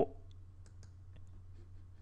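A few faint computer mouse clicks, spaced irregularly, over a steady low electrical hum.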